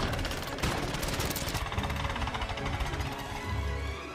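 Animated action-film soundtrack: music under a fast, dense clatter of splintering wooden planks as a rope bridge breaks apart, loudest at first and fading toward the end.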